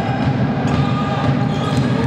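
Futsal ball being played on a wooden indoor court, with light touches and a few shoe squeaks, over a steady, reverberant hall din.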